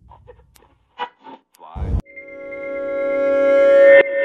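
Title-sequence sound effects: a few short glitchy blips, a brief swish with a low thud near the middle, then a steady buzzy drone that swells louder for about two seconds and cuts off sharply.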